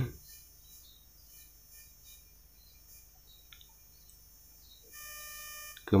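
Quiet background with faint, scattered bird chirps, then a steady tone lasting about a second near the end.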